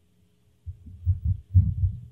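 A quick run of low, dull thumps over a faint steady hum, beginning about two-thirds of a second in.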